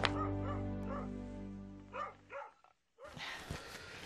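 Background music fading out, with a dog barking twice about halfway through.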